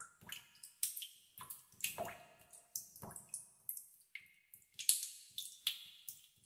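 Water drops dripping into a pool inside a cave: many irregular drips a second, some plinking with a clear pitch, each dying away briefly after it lands.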